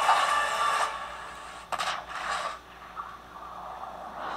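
Explosion sound effects from an action film's soundtrack: a burst of noise that dies away after about a second, then two short crashes around two seconds in.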